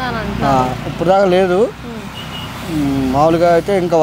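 A man speaking, with a pause in the middle, over a low steady hum of road traffic.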